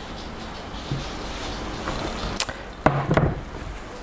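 A velour drawstring bag rustling as it is pulled off a porcelain whisky flagon. There is a sharp knock about two and a half seconds in, followed by a louder low clunk just after three seconds.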